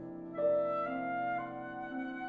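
Concert flute and Steinway grand piano playing classical music together. The flute holds a note, then comes in louder on a new note about half a second in and moves up through a line of held notes over the piano.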